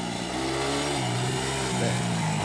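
Quad bike engine running and revving.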